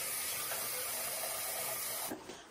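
A steady high hiss, even in level throughout.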